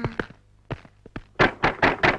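A falling, wailing voice trails off at the very start. Then come a few separate sharp thunks, and in the last half second a quick clattering run of knocks.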